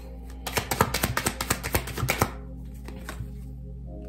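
A tarot deck being shuffled by hand: a quick run of papery card clicks lasting about two seconds, then a single click as a card is laid down. Soft background music plays steadily underneath.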